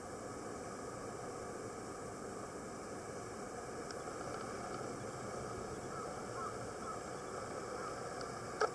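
Steady hiss of surf washing onto a rocky shore, an even rush of sound with no distinct events.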